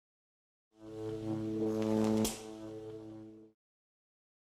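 Short logo sting: a low held note with even overtones comes in about a second in, a sharp hit lands a little after two seconds, and the note then carries on softer and stops about half a second before the end.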